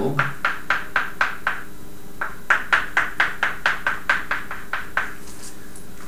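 Quick, regular light ticks or taps, about four a second, with a short break near the two-second mark, over a faint steady hum.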